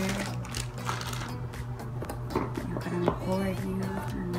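Background music with held notes that step in pitch and a light, regular beat.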